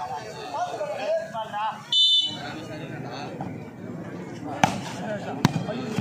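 Background crowd voices, then a short referee's whistle blast about two seconds in, signalling the serve. Near the end come two sharp volleyball hits, about a second apart.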